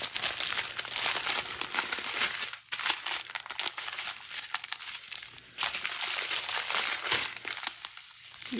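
Small plastic bags of diamond painting drills crinkling as they are handled and sorted, with brief quieter gaps about two and a half seconds in and again past the middle.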